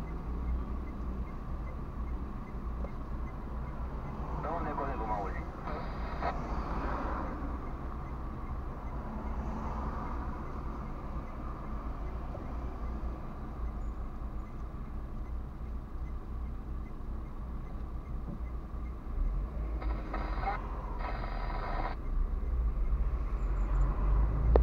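Steady low rumble of an idling car and surrounding traffic heard from inside the car's cabin, with a voice speaking faintly at a couple of points. The rumble grows louder near the end.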